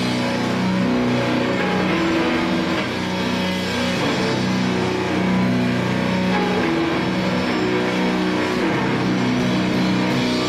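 Live rock played by a bass-and-drums duo: an electric bass holding long, low notes that change every second or so, over drums and cymbals.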